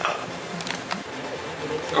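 A few light clicks and knocks as a worn-out BMW X3 E83 engine mount is turned over by hand. The mount has broken into two pieces.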